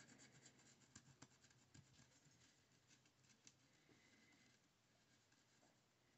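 Near silence, with faint small ticks and rubbing from an alcohol marker's tip dabbing colour onto a small button. The ticks die away after about four and a half seconds.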